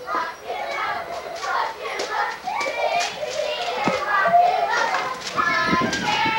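Young children's voices chattering and calling out as they play, with a couple of light knocks in the second half.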